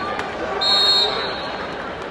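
Arena crowd chatter with one short, loud, shrill whistle blast about half a second in, typical of a wrestling referee's whistle.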